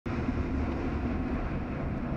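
Automatic car wash running over the vehicle, heard from inside the cab: a steady wash of spraying water and spinning brushes with a low rumble.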